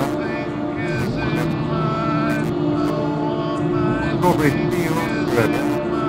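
Electronic music from a VCV Rack modular synthesizer patch: a steady low drone under short gliding, swooping tones, with a few brief bursts of noise in the second half.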